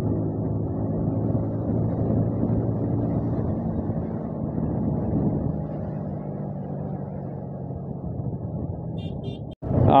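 Motorcycle engine running steadily while the bike cruises along at speed. The sound cuts out for a moment near the end.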